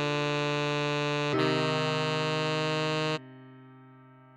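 Synthesized tenor saxophone melody playing held notes, E then F. The second note starts about a third of the way through and stops sharply near the three-second mark, leaving a quieter backing chord slowly fading.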